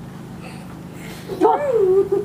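A person's drawn-out "oh" about a second and a half in, its pitch swooping up and down, over a steady low hum.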